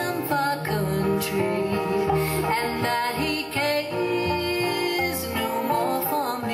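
Live acoustic bluegrass band playing a slow, sad song: upright bass, acoustic guitar and mandolin, with women's voices singing.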